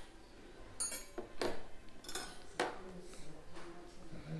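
Metal cutlery being laid down on a tray place setting, clinking about four times with short bright rings as the pieces touch each other and the tray.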